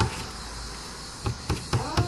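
Several light taps and clicks of paintbrushes against a watercolour paint set, most of them in the second half.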